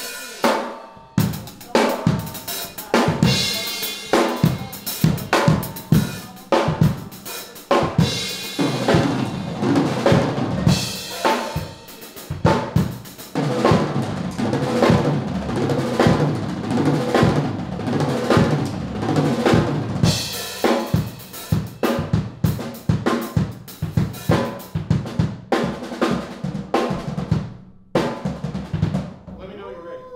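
Drum kit played in a live jazz band take: snare, bass drum and cymbal hits are loudest, with held notes from the other instruments underneath. The playing stops about two seconds before the end.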